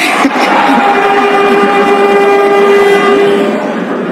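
A horn blown in a steady, held tone for about three seconds over crowd noise in a hall, fading near the end.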